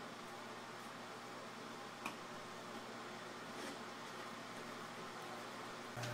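Quiet room tone: a faint steady hiss with a single small click about two seconds in.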